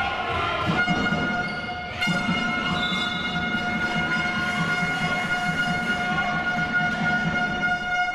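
A long, steady buzzer-like tone held at one pitch without a break, over the low rumble of a sports hall.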